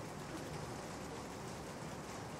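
Pause in the talk: only a steady, even background hiss of room tone and recording noise.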